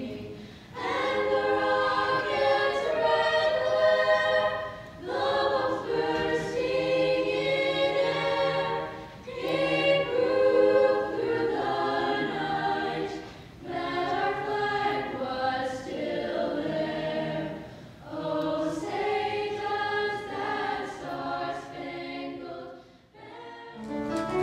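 Children's choir singing, in sung phrases of about four seconds separated by short breaks for breath.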